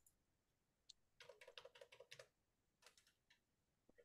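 Faint typing on a computer keyboard: a quick run of keystrokes about a second in, then a few scattered taps.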